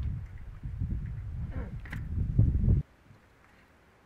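Low, uneven rumble of wind on the microphone, with a couple of faint clicks as a bicycle wheel is being taken off. The sound drops away abruptly about three seconds in, leaving near silence.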